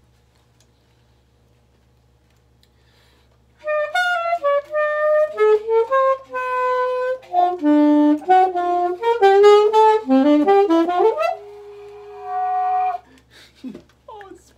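Alto saxophone playing a fast bebop lick over a concert D minor chord, a quick run of many short notes that starts after a few seconds of near silence and ends on a held note.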